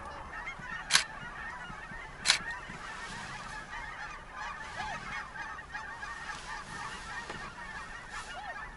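A large flock of birds calling continuously, many overlapping calls merging into a steady chatter. Two sharp clicks stand out about one and two seconds in.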